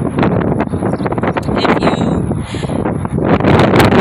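Wind buffeting a phone's microphone: a loud, uneven rumble with scattered knocks and crackles.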